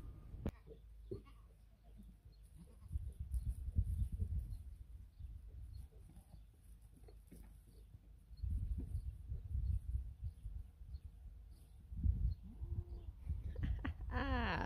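Goats bleating faintly now and then, with gusts of wind rumbling on the microphone.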